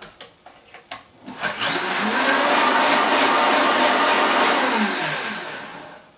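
Vitamix blender blending ground nuts, flaxseed and psyllium seed with water. After a couple of light clicks, the motor starts about a second and a half in with a rising whine, runs steadily at full speed, then winds down near the end.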